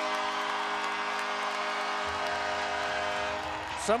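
Arena goal horn sounding a long, steady chord after a home goal, fading out near the end.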